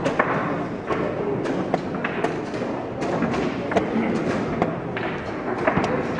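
Quick, irregular knocks of chess pieces being set down and moved on the board, with chess-clock buttons struck between moves during a fast blitz game, roughly two knocks a second.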